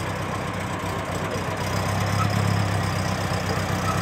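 1919 Templar roadster's four-cylinder engine running at low speed as the car rolls slowly past, a steady low drone that swells slightly about two seconds in; the engine is running rich.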